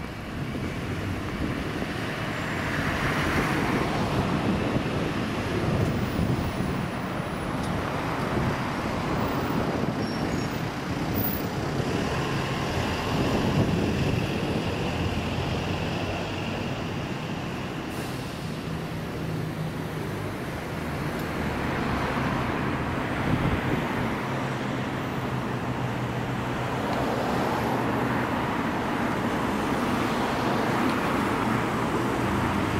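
Road traffic at a city intersection: cars and a bus passing, their engine and tyre noise swelling and fading several times. A steady low engine hum runs underneath through the second half.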